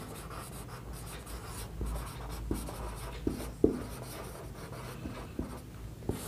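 Marker pen writing on a whiteboard: faint strokes with a few short taps as the tip meets the board.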